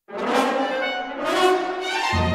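Orchestral film score with brass, coming in suddenly out of silence and swelling twice.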